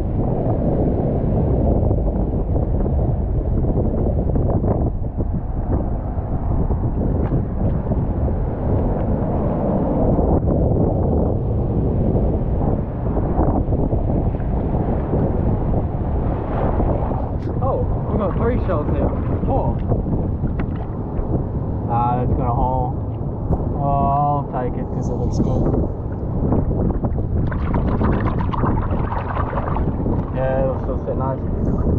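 Wind buffeting the microphone over surf washing across a rocky shore platform, a steady low rumble. Brief snatches of a man's voice come through in the second half.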